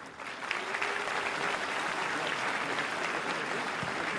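Large audience applauding in a hall. The clapping swells up within the first half second and then holds steady.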